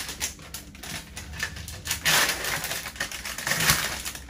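Handling noise from clinical supplies and instruments: a run of small clicks and crinkly rustles, loudest about two seconds in and again near the end.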